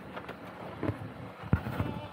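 Outdoor noise with a few soft knocks, one louder thump about one and a half seconds in.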